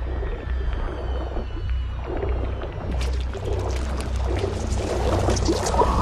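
Film soundtrack of an underwater scene: a deep steady rumble with music and bubbling water. Near the end a woman screams underwater, muffled.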